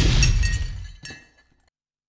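Glass shattering: a sudden crash with ringing, tinkling fragments, a smaller second clatter about a second in, and the whole sound dying away within two seconds.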